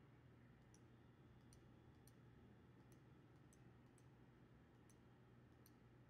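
Faint computer mouse clicks, about one or two a second, as vertices of a line are placed one after another, over a low steady hum.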